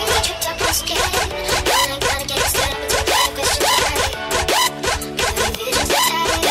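Hardtekk electronic dance music: a fast, even beat under a stepping, repeating synth melody.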